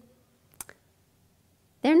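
A pause in a woman's talk, mostly quiet, with two short clicks close together about half a second in; her voice trails off at the very start and starts again near the end.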